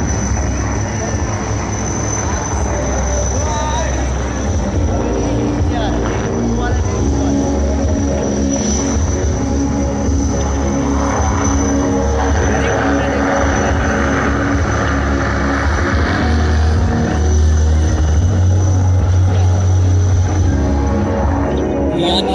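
HAL Rudra armed helicopters flying low overhead: a heavy rotor drone with a steady high whine over it, growing louder near the end as a helicopter comes closer.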